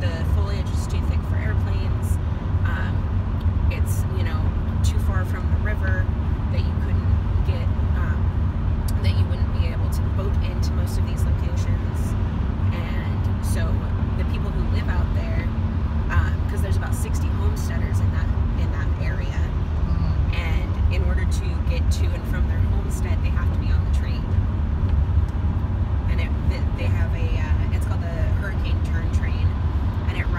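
Steady low rumble of a vehicle driving on a wet highway, its engine and tyre noise heard from inside the cabin, with faint, indistinct voices underneath.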